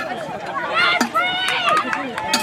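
Overlapping talk from several people close by, words not clear, with a single sharp knock about halfway through.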